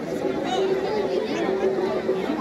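A crowd talking over one another, with a steady two-note tone that keeps alternating and repeating beneath the voices.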